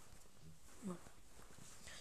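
Quiet room noise, broken once a little under a second in by a short vocal sound from a person, a brief murmur that glides in pitch.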